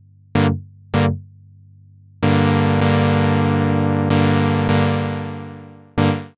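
Synthesizer chord stabs from Ableton Live's Analog instrument. Two short hits come first. About two seconds in, a held chord starts, is retriggered a few times and fades out over about four seconds. A new short hit comes right at the end.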